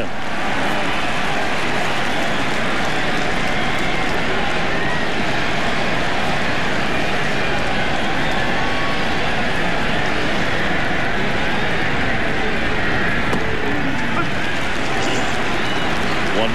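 Steady din of a large stadium crowd, many voices blending into an even noise with a few voices standing out here and there.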